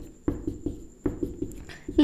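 Marker pen writing on a whiteboard: a quick run of short tapping strokes as letters and bond lines are drawn.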